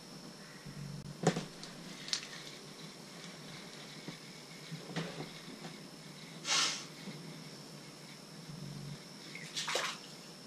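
Quiet handling of an ice-fishing rod and reel while the jig is rebaited: scattered light clicks and knocks, and a short hiss about two-thirds in and again near the end, over a faint steady high tone.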